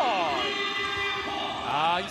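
A sports commentator's drawn-out excited shout calling a made three-pointer, falling in pitch, with steady arena noise beneath.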